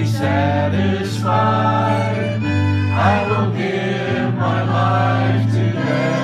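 A small worship band performing a song: several voices singing together over held low notes, with violin accompaniment.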